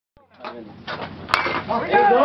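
Baseball bat hitting a pitched ball: one sharp impact about a second and a third in, the hit that puts the batter on base with a single.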